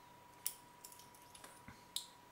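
Faint metallic clicks and scrapes of a hook pick working the pins of a Lockwood 334 pin-tumbler lock core under tension. There is a sharper click about half a second in and another near the end, as the sixth and last pin sets.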